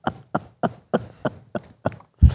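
A man laughing hard, a run of short breathy laughs at about three a second.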